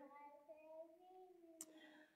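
Near silence: room tone with a faint, gently wavering tone.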